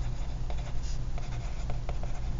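Pencil writing on lined paper: a faint scratching of graphite with many small ticks from the short strokes of handwritten words.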